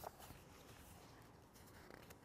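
Near silence: room tone, with faint rustling of paper pages being turned in a spiral-bound book and a small click at the start.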